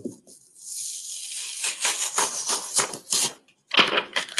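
Plastic carrier sheet being peeled off cooled reflective heat transfer vinyl on a fabric bandana: a crackling rustle lasting about three seconds.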